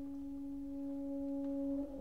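A single soft woodwind note held steady in an orchestral recording, ending shortly before the full orchestra comes in at the very end.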